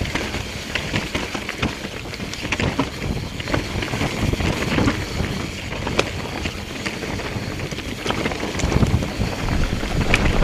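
Mountain bike descending a rough forest singletrack: wind rushing over the microphone and tyres rumbling over dirt and roots, with many sharp clicks and rattles from the bike as it hits bumps. It gets louder near the end as the pace picks up.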